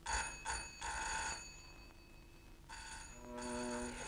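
Electric doorbell ringing in bursts: two short rings and a longer one, then after a pause of over a second, a short ring and a longer one.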